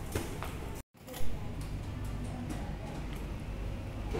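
Indoor room tone with a low steady rumble and faint voices. About a second in the sound drops out completely for a moment, then a single loud thump.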